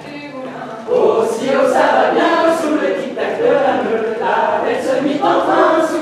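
A group of voices singing an unaccompanied dance song, softer at first, then much louder about a second in as more voices join.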